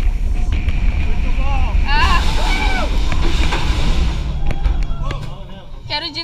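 Wind rush and rumble on the microphone of a camera riding on the Manta flying roller coaster, with riders screaming about two seconds in. The rush dies away after about four seconds as the train slows.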